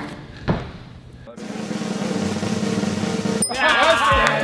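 Snare drum roll sound effect, starting about a second in and cutting off abruptly just before the end.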